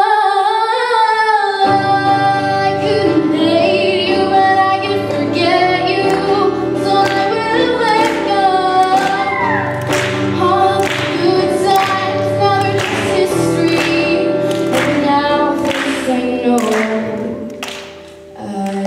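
A young female singer sings live to her own strummed acoustic guitar. A held, sung note opens, the guitar comes in about two seconds in, and the sound dips briefly near the end between phrases.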